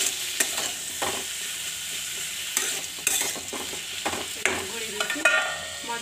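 Ivy gourd and potato sticks sizzling in hot oil in a metal kadai while a metal spatula stirs them, scraping and knocking against the pan. Near the end, a short metallic ringing scrape.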